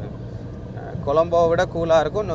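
Steady low hum of a Toyota van's engine and tyres heard from inside the cabin while it is driven. About a second in, a man's voice starts over it.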